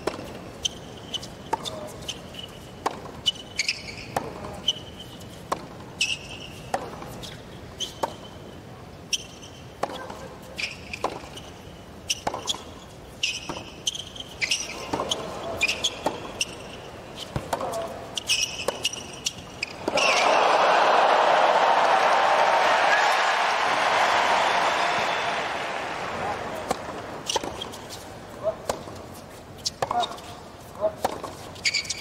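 A long tennis rally on a hard court: racket strings striking the ball and the ball bouncing, about once a second, with sneaker squeaks on the court between shots. About two-thirds of the way through the point ends and a stadium crowd cheers and applauds loudly, fading over several seconds, before ball strikes begin again near the end.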